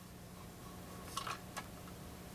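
Faint steady low hum with a few light clicks about a second in, as fingers press the record-size sensors on the platter of a Technics SD-QD3 automatic turntable during a test of its auto-sensing mechanism.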